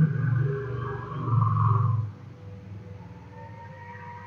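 A man's wordless, drawn-out voice sound for about the first two seconds, then quieter.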